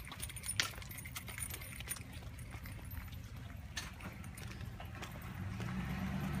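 Footsteps on a concrete sidewalk with scattered light clicks and metallic jingling, over a low steady rumble. A low engine hum comes in near the end.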